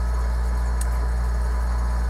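Steady low hum with a hiss over it, the sound of a window air conditioner running.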